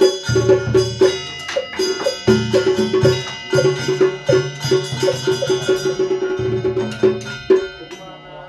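Ritual percussion for a Vietnamese altar offering: rapid, even strikes on a wood block, with bells ringing over them and low drum beats every second or so. It stops abruptly just before the end.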